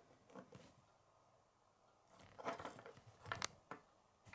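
Small Lego brick assemblies handled and set down on a wooden table: faint plastic clicks and taps, bunched in the second half, with one sharper click shortly before the end.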